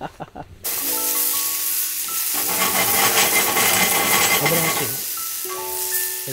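Mushrooms sizzling and frying in a small cast-iron skillet over a wood fire, being stirred with wooden tongs; the sizzle cuts in suddenly about half a second in and is the loudest sound, with soft background music notes alongside.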